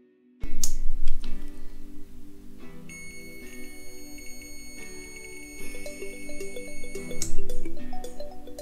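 A digital multimeter's continuity buzzer sounds one steady high beep, starting about three seconds in and cutting off about four seconds later. The probes are on a door-switch wire, and the beep shows the circuit is closed, so the switch is working.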